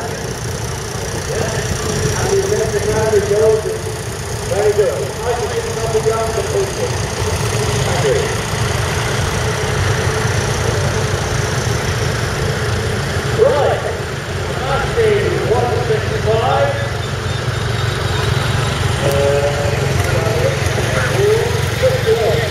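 Vintage tractor engines running at low revs, a steady low drone throughout, with voices talking over it on and off.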